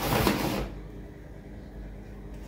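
Rustling of a laminated woven shopping bag and the groceries inside it as a hand rummages in it, loudest in the first half-second and then faint.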